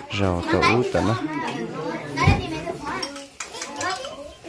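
Lively chatter of several people talking over one another, children's voices among them, with a dull thump a little past halfway.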